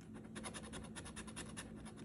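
A large metal coin scraping the scratch-off coating from a paper lottery ticket in quick back-and-forth strokes, several a second, starting about a third of a second in.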